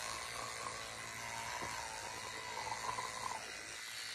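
Electric toothbrush buzzing steadily in the mouth while brushing the lower teeth, its tone wavering slightly as the head moves.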